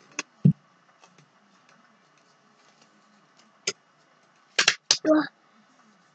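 Quiet handling of a paper cup and its lid being pushed on without hands: a light click and a dull thump in the first half-second. Later come short, sharp huffs of effort and a grunt near the end.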